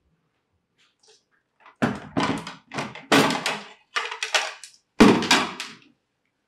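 Dishes and serving ware being knocked and set down on a wooden dining table: a run of short clatters and knocks from about two seconds in, with the loudest thunk about five seconds in.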